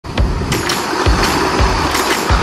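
The continuous rolling rush and clatter of riders sliding down a long playground slide, with sharp clicks and low thumps about every half second.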